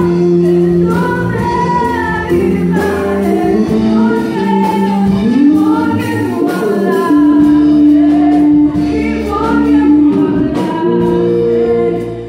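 A woman singing a gospel worship song into a handheld microphone through the PA, with a live band of electric guitar, keyboard and drums playing along.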